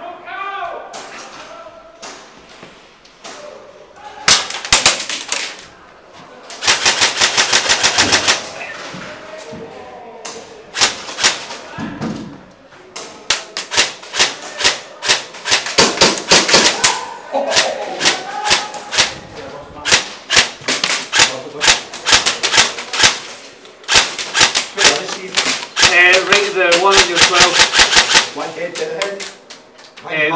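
Airsoft guns firing in repeated full-auto bursts, each a rapid, even rattle of shots lasting a second or two. The bursts come about four seconds in and again around eight seconds, then pile up through the second half, with shouted voices between them.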